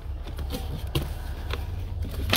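A few light clicks and taps of the plastic glove compartment being worked loose, over a steady low hum.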